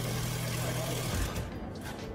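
Handheld power drill running steadily under load as its bit bores into steel, cutting off about a second in.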